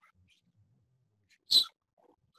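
Near-silent room with one short, sharp noise about one and a half seconds in.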